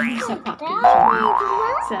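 A young girl's high-pitched voice, sing-song, its pitch sliding up at the start and then wavering up and down for about a second near the end.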